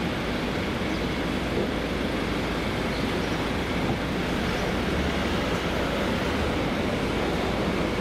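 Steady city traffic noise, an even rumble with no single vehicle standing out.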